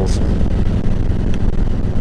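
Harley-Davidson Ultra touring bike's Milwaukee-Eight V-twin running steadily at cruising speed, a low rumble mixed with wind noise on the microphone.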